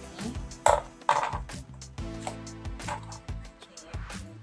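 Small scissors snipping through a cotton pad, two sharp snips about a second in, over guitar background music.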